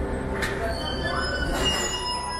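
Paris Métro line 7 MF77 train braking to a stop at the platform, its steel wheels and brakes giving several high-pitched squeals in the second half over a low running rumble.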